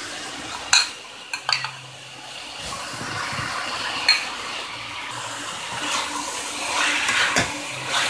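Vegetables sizzling in a non-stick frying pan as thick pizza pasta sauce is spooned in from a bowl, with a few sharp clinks of utensil against bowl and pan, followed by stirring.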